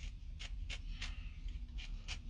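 A few faint, short clicks, about four or five over two seconds, over a low steady rumble inside a car.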